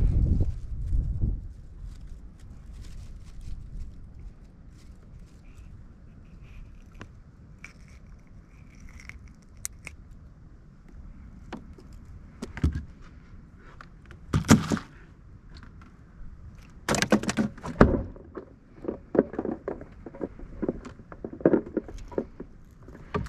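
Scattered knocks, rattles and scrapes of fishing gear being handled in a small boat: a sharp knock about twelve seconds in, louder knocks and rattles around fourteen and seventeen seconds in, then a run of quick clicks near the end.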